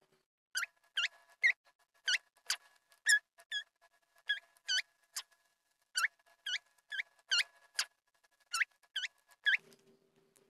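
Short, high-pitched squeaky chirps, each a quick falling note, repeated about two a second in uneven runs.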